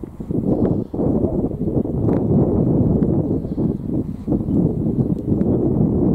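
Wind buffeting the microphone, a rumbling noise that rises and falls.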